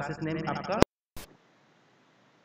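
A man speaking Hindi, drawing out a word, then breaking off abruptly with a sharp click a little under a second in. A short blip follows, then only faint hiss.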